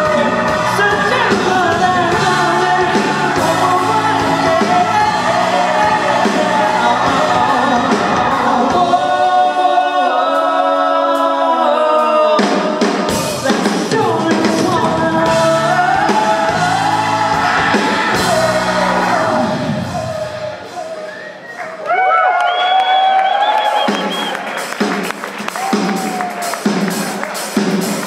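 Live band playing a song: male lead vocal with electric guitar, electric bass and drum kit. The bass and drums drop out briefly about ten seconds in. The music thins out about twenty seconds in before the voice comes back over a steady beat.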